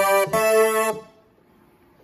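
Nord Stage 3 synth engine playing its "Funky Lead" synth lead preset: two short, bright, buzzy notes, the second held about half a second. The notes stop about a second in.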